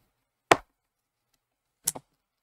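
Two sharp knocks about a second and a half apart, the second one doubled, as the replacement power jack and its cable are handled against the laptop's open chassis.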